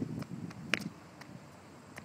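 Footsteps scuffing on asphalt: a few short clicks and scrapes, the sharpest about three-quarters of a second in, over a low outdoor rumble that dies down in the second half.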